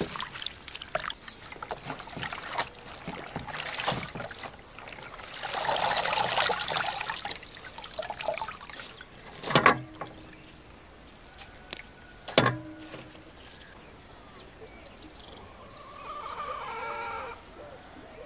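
Hands swishing and splashing sorrel leaves in a plastic basin of water, with a longer burst of sloshing water a few seconds in. Two sharp knocks come near the middle and are the loudest sounds, and a bird calls briefly near the end.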